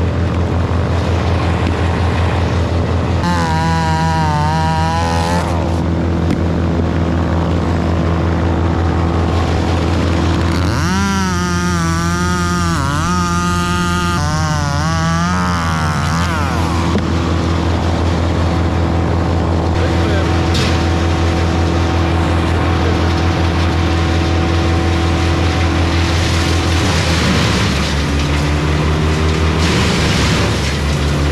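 Gas chainsaw revving up and cutting into a maple trunk in two bouts, its pitch wavering under load, over a steady engine drone that changes near the end.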